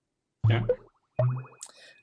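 Brief speech: a man's 'yeah' about half a second in, then another short, buzzy vocal sound a second later.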